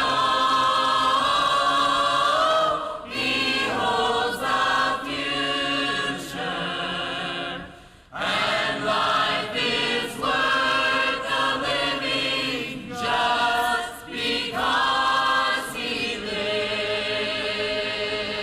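Mixed church choir of men and women singing, with a short break between phrases about eight seconds in.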